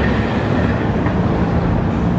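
Steady road traffic noise, loud and heavy in the low end, with a faint engine hum in it.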